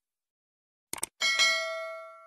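Two quick clicks, then a bright bell ding that rings on and fades away: the mouse-click and notification-bell sound effects of a YouTube subscribe animation.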